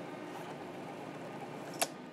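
Steady hum of a 1953 IBM Model A electric typewriter's motor running idle, with a single sharp click near the end.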